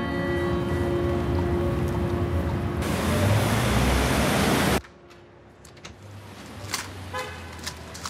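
Held music chords fading out under city street traffic noise with car horns; the traffic noise swells and cuts off suddenly about five seconds in, leaving a much quieter background.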